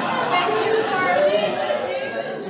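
Many people's voices overlapping at once, a crowd chattering.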